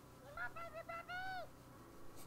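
A short high-pitched hooting phrase: a few quick notes, then one longer note that rises and falls, ending about a second and a half in.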